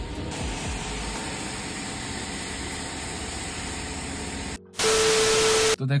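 A steady hiss with faint background music, then, after a brief dropout about four and a half seconds in, a loud second-long burst of static carrying a single steady beep that cuts off abruptly: an edited-in transition sound effect.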